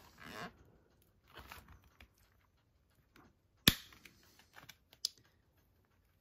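Light handling of a Blu-ray digipack's plastic disc trays and discs: faint rustles and taps, with one sharp click a little past halfway and a smaller click near the end.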